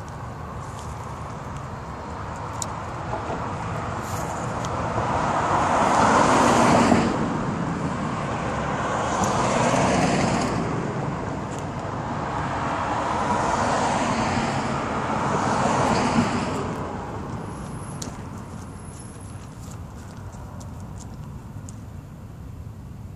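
Road traffic passing on the street: four vehicles go by one after another, each rising and falling away, the loudest about seven seconds in.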